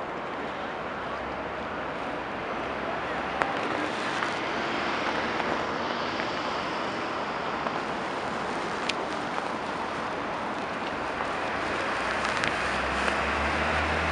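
Downtown street traffic at an intersection: a steady wash of car engines and tyre noise. A deeper engine rumble builds near the end as a flatbed tow truck pulls through.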